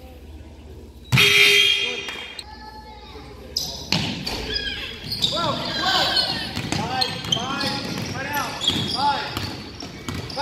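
Gym basketball play: a loud, sudden ringing sound about a second in, then from about four seconds in a basketball being dribbled on the hardwood with many sneakers squeaking as players run the court.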